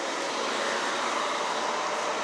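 Steady rushing noise of street traffic, swelling slightly as a vehicle passes.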